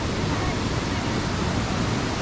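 Steady rushing of falling water from Datanla Waterfall.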